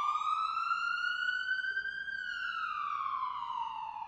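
Ambulance siren sound effect: one slow wail that rises in pitch for about two seconds, then glides slowly back down.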